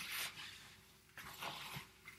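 A gloved hand working dried rosebuds, coarse salts and baking soda together in a plastic bowl to break up lumps: faint, crunchy rustling in two short bursts about a second apart.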